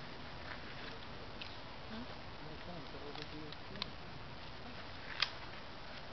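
A few small sharp clicks from handling a pistol and gear at a shooting bench, the loudest about five seconds in, under faint low voices.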